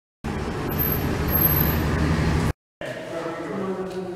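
Steady low rumble of outdoor vehicle and traffic noise for about two seconds, cut off suddenly. Then quieter indoor room sound with a faint voice near the end.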